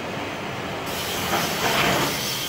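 A knife blade being sharpened on a motor-driven grinding wheel: a steady grinding hiss that gets louder and harsher in the second half as the steel is pressed harder against the spinning wheel.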